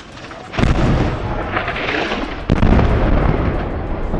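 Explosions of a strike on a high-rise apartment building: a loud blast about half a second in, a second sharp blast about two and a half seconds in, and a sustained rumble of falling debris between and after them.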